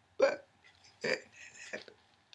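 A woman's voice making three short, separate vocal sounds, each under half a second long and spaced under a second apart, the first the loudest.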